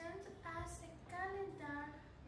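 A child singing a short melodic phrase, a run of held notes a fraction of a second each.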